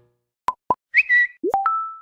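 Editing sound effects over an animated title card: two short pops, then a high bleep about a second in, then a quick upward-sliding boop and two short pure tones near the end, the last one held.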